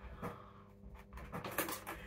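Faint knocks and clicks of a plastic laundry basket with fold-down plastic legs being lifted and set back down, one light knock early and a quick cluster in the second half.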